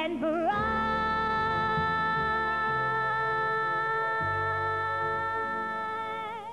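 A woman's voice sliding up into one long held note and sustaining it steadily for about five seconds, with vibrato as it settles and again as it ends, over a low sustained accompaniment: the closing note of the song.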